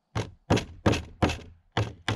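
Hammer driving nails through the edge of a beaver hide into a plywood board to stretch it flat. Five sharp blows, a little under three a second, with a short pause before the last.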